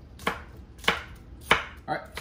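A knife chopping green onions on a wooden cutting board: three sharp chops about half a second apart.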